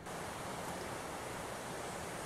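Steady, even outdoor background noise, a low rush without distinct events.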